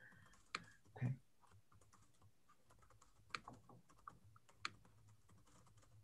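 Faint typing on a computer keyboard picked up by a video-call microphone: irregular light key taps with a few sharper clicks.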